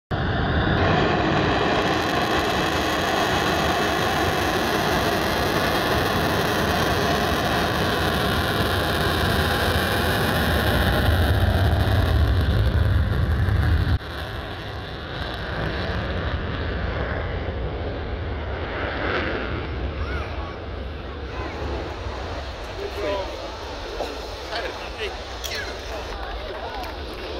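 Saab JAS 39 Gripen fighter's single jet engine at full power with afterburner for takeoff: very loud jet noise with a steady whine, a deep rumble building to its loudest about twelve seconds in. About halfway through the sound cuts suddenly to a quieter, fading jet noise, with onlookers' voices near the end.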